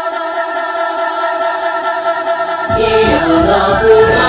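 Wordless a cappella singing: one voice overdubbed many times into held, layered choir-like chords of Japanese syllables. About two and three-quarter seconds in, a lower part that slides in pitch joins, with low pulses underneath.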